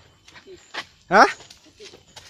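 A few soft footsteps on a dirt trail, with a man's short questioning "Ha?" about a second in.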